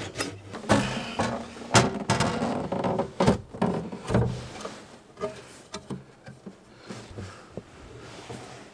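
Clunks, knocks and scrapes as a lithium trolling battery is handled and set into a boat's metal battery tray. Some knocks ring briefly. The knocks come thick and loud in the first half and turn to lighter, sparser taps later.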